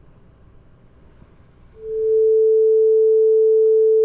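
A 440 Hz sine wave from a Pure Data oscillator (osc~ 440) on a Critter & Guitari Organelle. It fades in a little under two seconds in and then holds as a single steady pure tone.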